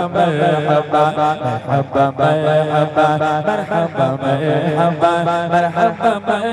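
A man singing an Islamic gojol into a microphone, a continuous repetitive, chant-like melody with no instruments audible.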